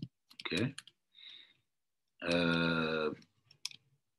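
A man's drawn-out hesitation sound, held on one pitch for about a second, is the loudest thing. Around it come a few sharp clicks from a computer's keys or trackpad as code is edited: one at the start and a small cluster near the end.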